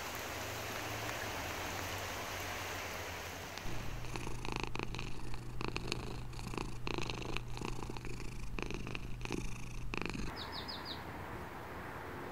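Domestic cat purring close to the microphone: a steady low rumble with a rhythmic pulse, starting about four seconds in and stopping about ten seconds in.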